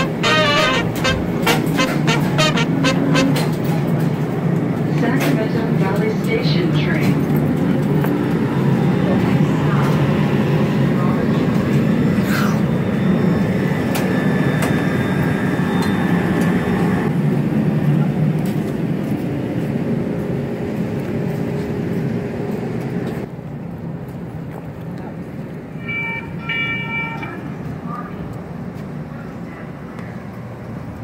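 Sacramento light-rail train running with a steady rumble. The rumble drops in level about two-thirds through as the train pulls away, and two short horn toots sound about a second apart near the end.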